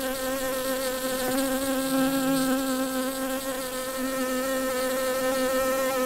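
A honeybee buzzing in one steady, continuous drone whose pitch wavers slightly.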